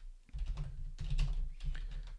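Typing on a computer keyboard: a quick run of keystrokes starting a moment in, with a low rumble beneath them.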